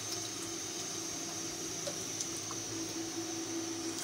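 Water poured in a steady stream from a plastic bottle into a steel bowl, with a steady hum underneath.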